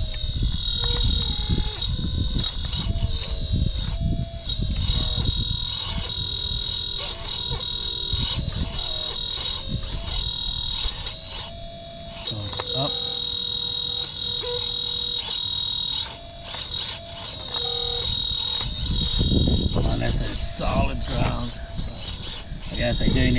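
Electric hydraulic pump of a 1/12-scale RC hydraulic excavator whining steadily in a high pitch, its lower tone stepping up and down and cutting in and out as the boom, arm and bucket are worked. The owner takes the sound as a sign that it needs more hydraulic oil. Low rustling noise runs underneath.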